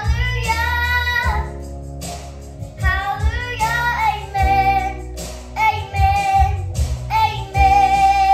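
A nine-year-old girl singing over instrumental backing music, in several phrases with long held notes; the last note is held steady from near the end.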